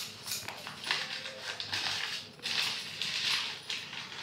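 Plastic and paper wrapping rustling and crinkling as a small wrapped packet is handled and unwrapped, in irregular bursts with a louder stretch in the second half.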